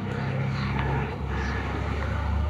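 A steady low hum, like a distant engine, under a faint even hiss.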